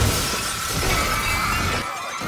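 Glass shattering as a body smashes through a glass pane, a continuous spray of breaking and falling shards, with a thin steady high tone underneath.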